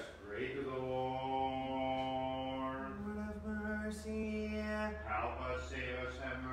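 Orthodox liturgical chant: a male voice sings long, sustained notes, stepping up to a higher note about three seconds in and holding it for about two seconds.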